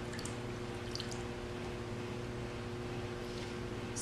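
Electric potter's wheel running with a steady hum, with faint wet sounds of clay and water under the hands as the wall of a bowl is pulled up.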